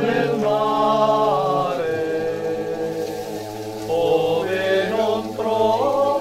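A choir singing a folk song in harmony, several voices holding long notes and moving to new chords every second or two.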